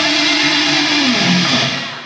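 Distorted electric guitar in a live metalcore band, ringing out a held note that bends down about a second in, then fading out near the end.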